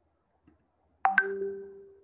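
A two-note electronic notification chime: two quick ringing dings close together about a second in, fading out over the following second.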